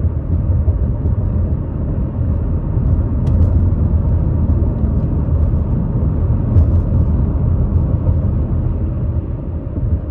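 Steady low rumble of a car driving on a paved road, heard from inside the cabin: engine and tyre noise.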